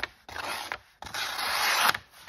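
The blade of a Tactile Knife Co Rockwall pocket knife dragging into the edge of a sheet of printer paper: a short rasp, then a longer, louder one from about a second in. The paper scrapes rather than parting cleanly, the sign of an edge that is not super sharp and hard to get into the paper.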